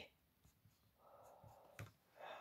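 Faint strokes of a felt-tip marker on a plastic-sleeved paper tracker, crossing off a circle, followed by a single sharp click near the end.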